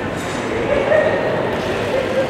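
Boxing crowd shouting and calling out over a steady hubbub of voices, with a few short, held yells.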